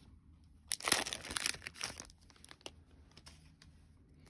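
Foil trading-card pack wrapper being torn open and crinkled, a noisy burst lasting about a second starting just under a second in, followed by a few faint clicks of cards being handled.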